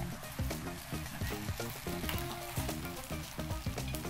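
Soft background music with a steady, faint crackling hiss and light clicks over it.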